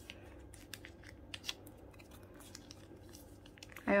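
Faint scattered clicks and crinkles of thin plastic binder sleeves and photocards being handled, as a card is pushed into a sleeve pocket.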